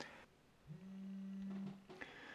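An iPhone 4's vibration motor buzzing for about a second as an incoming call arrives: a faint, steady low buzz that starts with a brief rise in pitch.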